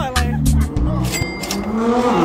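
Hip hop background music with a heavy bass beat; in the second half a rising sweep sound effect carries over into the next shot.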